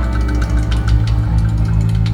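Live band playing amplified music through a PA: electric guitars, a heavy steady bass line, keyboard and drums with regular cymbal and drum hits.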